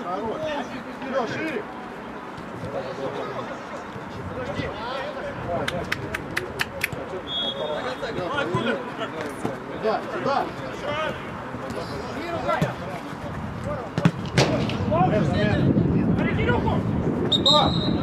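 Players' voices shouting across a football pitch during play, louder from about two-thirds of the way through, with a quick run of sharp clicks about six seconds in and short high whistle-like tones near eight seconds and near the end.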